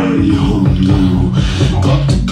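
Music playing: a song with a steady beat over sustained bass notes.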